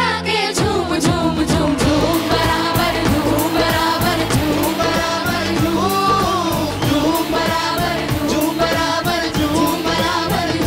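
Young singers singing an Indian pop song into microphones over band accompaniment with a steady drum beat.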